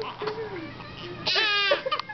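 Infants crying: quieter fussing, then a loud wavering wail a little over a second in.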